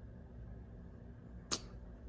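Quiet room tone with a steady low hum, broken by one sharp click about one and a half seconds in.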